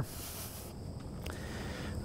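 Quiet, steady outdoor background rumble with a faint step on concrete a little past one second in.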